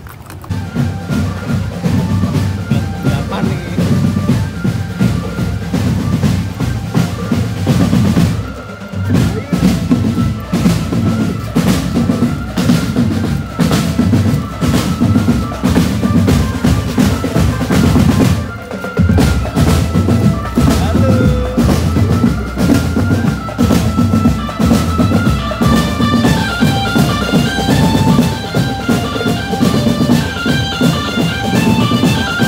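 Marching drum band playing a steady beat on bass drums and snare drums with rolls, while a sustained melody line runs above. The drumming breaks off briefly about 8 seconds and 19 seconds in, and higher melody notes join near the end.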